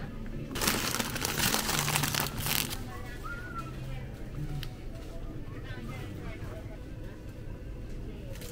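Plastic snack bags crinkling as they are pushed and handled on a store shelf, a burst of about two seconds early on, then faint store background music and distant voices.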